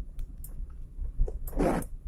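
Vehicle driving over a rough, muddy dirt track, heard from inside the cabin: a low rumble with small knocks from the bumps, and a brief scraping rush about one and a half seconds in.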